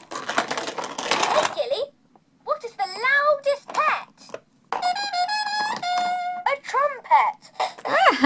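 A Bubble Guppies toy stage playset's sound unit playing recorded character voices and a short tune through its small speaker: a noisy burst at the start, a voice line, then a few steady stepped notes on a brass-like tone, then more voice.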